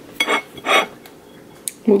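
Two short clinks of a ceramic plate being handled on a table, with a light tick near the end.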